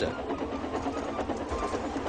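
Steam locomotive running fast: rapid, even chuffing with wheels clattering on the rails, the sound of a runaway engine at speed.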